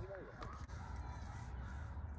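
A person laughs briefly at the start, over a steady low rumble.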